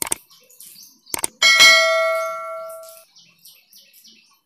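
Subscribe-button sound effect: mouse clicks, then a single bell ding that rings out and fades over about a second and a half. Faint soft scraping from a spatula stirring poha in the pan follows.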